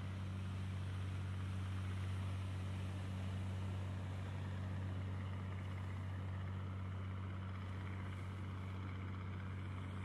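A steady low hum under a faint hiss, unchanging throughout.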